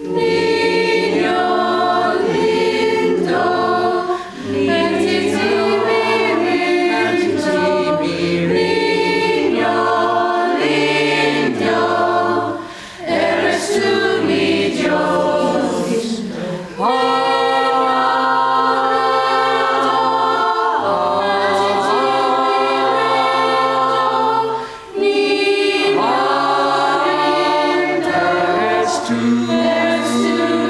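Mixed choir of men and women singing a carol together. It comes in right at the start after a moment's quiet and breaks off briefly between phrases several times.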